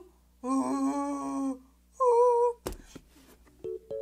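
A voice humming two held notes: a long low one, then a short higher one. A sharp click follows, then a few faint short tones near the end.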